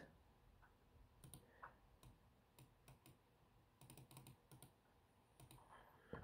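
Near silence with faint, scattered clicks from a laptop's keyboard, a few keys at a time in small groups.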